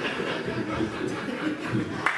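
People laughing and chuckling, a loose mix of several voices.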